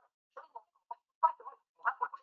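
A recorded voice played back at double speed in Camtasia, coming through fast and high-pitched in short, choppy bursts.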